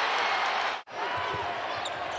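Basketball arena sound: steady crowd noise with a basketball bouncing on the hardwood court. The sound cuts out abruptly for a moment a little under a second in.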